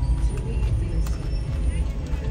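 Steady low rumble of a car heard from inside the cabin, with faint voices in the background.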